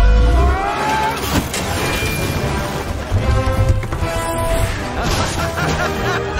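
Film score music over action sound effects, with a heavy low rumble at the start and a few sharp crashing impacts.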